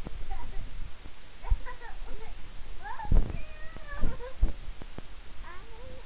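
A string of short meow-like cries, each rising and falling in pitch, with a few soft thumps at about one and a half, three, four and four and a half seconds in.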